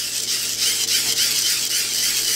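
Hand-crank dynamo being cranked steadily, its gearing giving a fast, even whirring rasp that gets louder over the first half second.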